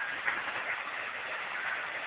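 Faint, steady, even hiss: the background noise of the recording in a pause between spoken phrases.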